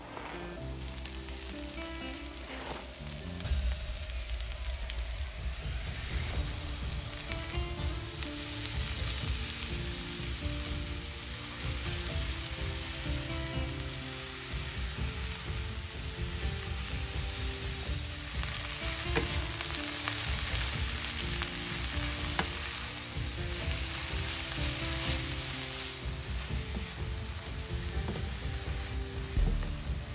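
Sliced cabbage and onions sizzling in hot oil in a frying pan and being stirred with a wooden spatula. The sizzle is steady and grows louder for a stretch past the middle.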